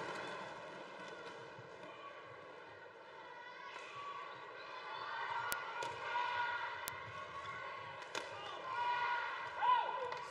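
Badminton rally: a few sharp racket hits on the shuttlecock from about five and a half seconds in, over the steady noise of a large arena crowd, with the crowd's voices swelling near the end.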